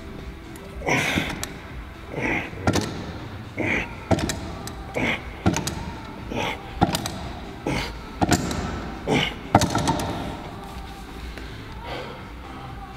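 Repetitions of a strap-and-chain weight-plate lift for arm-wrestling wrist work. Each rep brings a forceful breath and a sharp clank from the chain and plate, about once every second and a half, eight or so times, stopping near the end.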